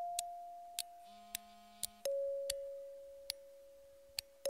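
Two bell-like chime notes, a higher one ringing out and fading, then a lower one struck about two seconds in and fading, over sparse, sharp ticking clicks.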